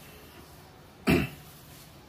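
A single short cough about a second in, over quiet room noise.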